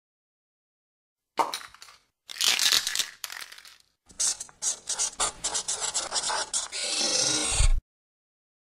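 Intro sound effect for a logo reveal: a few scraping bursts, then a run of quick irregular clicks and rattles, building to a steady hiss with a low thud that cuts off suddenly.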